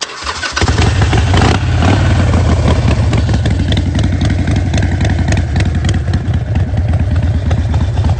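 Harley-Davidson air-cooled V-twin motorcycle engine starting up and catching within about half a second, then running loudly with an even, pulsing exhaust beat and a brief rev about a second in.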